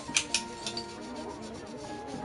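A paintbrush working black acrylic gesso onto the edge of a canvas, giving a few short scratchy ticks in the first second, over quiet background music.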